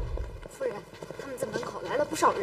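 A dramatic music cue dies away about half a second in. Several indistinct, overlapping voices follow, with footsteps of people walking.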